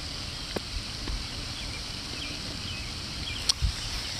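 Steady outdoor background noise at a pond's edge, with a couple of faint clicks and no voices.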